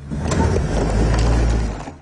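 Vehicle rumble and crunching on a rocky dirt track as a pickup truck tows a stuck Forest River Sunseeker motorhome out with a strap. The noise builds in the first half second, holds, and fades near the end.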